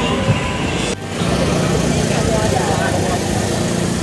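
Busy street-market crowd, many voices talking at once, with motor scooter engines running. The sound dips and changes abruptly about a second in, after which a steady low engine hum runs under the chatter.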